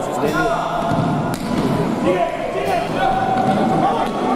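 Futsal match play in an echoing sports hall: players and coaches shout while the ball is kicked and bounces on the wooden court, with one sharp kick about a second and a half in.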